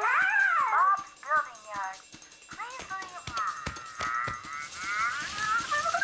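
Answering machine cassette being chewed up: warbling, voice-like sounds sliding up and down in pitch over a run of irregular clicks, with a held tone near the end.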